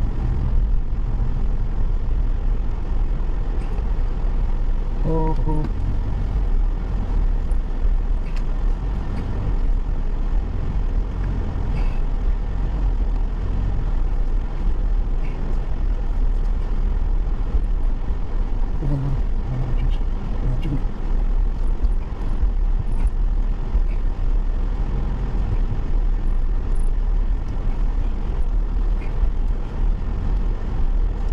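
Steady low engine and road rumble heard from inside a car's cabin while it drives.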